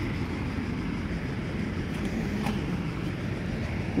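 Steady low rumble of road traffic, with a faint engine hum through the middle.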